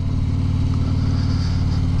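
Harley-Davidson touring motorcycle's V-twin engine running steadily at highway cruising speed, an even low drone.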